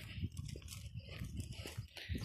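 Gusty wind rumbling on a handheld phone microphone while walking, with faint irregular scuffs of steps on the pavement.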